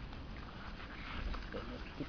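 A small dog sniffing quietly as it noses about in garden shrubs.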